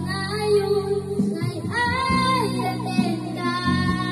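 A young girl singing an Ilocano waltz into a microphone over a karaoke backing track, her voice holding and bending long sung notes.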